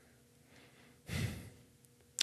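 A person sighing once: a short breath out about a second in, between stretches of near quiet.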